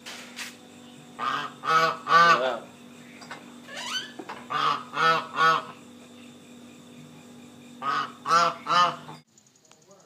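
Goose honking in three quick bursts of three honks each, over a steady low hum.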